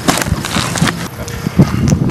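Wind buffeting an outdoor microphone, with rustling and knocks from movement and handling; one sharp knock stands out about a second and a half in.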